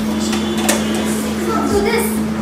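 A steady low hum, with a few light clicks from ingredients and utensils being handled at a kitchen counter.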